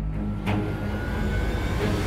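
Drama background score: a low sustained drone, a sharp accent about half a second in, and a rushing noise that slowly swells toward the end.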